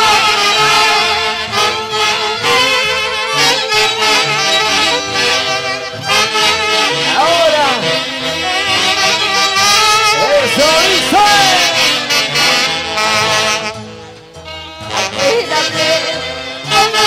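Live band music led by a section of saxophones with other brass, played loud, with a short drop in level near the end before the band comes back in.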